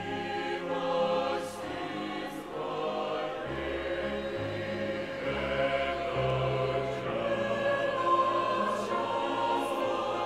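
A mixed church choir of men's and women's voices singing a hymn in held chords, with deeper bass notes joining about a third of the way in.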